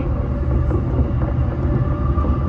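JR Yokohama Line E233-6000 series electric train running on the line, heard from the driver's cab: a steady low rumble of wheels on rail, with a faint steady whine above it.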